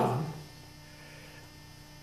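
A steady, faint low hum in a quiet room, after the last spoken word fades out in the first half-second.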